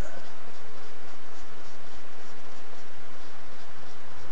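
Paintbrush stroking and dabbing oil paint onto paper, a faint repeated scratching of the bristles.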